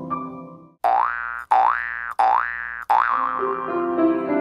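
Grand piano playing fades out, then a rising-pitch sound effect plays four times, each one sliding sharply upward and cutting in abruptly about two-thirds of a second after the last. Piano notes return near the end.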